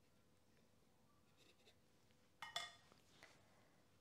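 A paintbrush set down on a watercolour palette: one short clink about two and a half seconds in, otherwise near silence.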